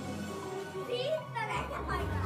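Kahoot quiz game music playing, with young children's voices over it, one child calling out about a second in.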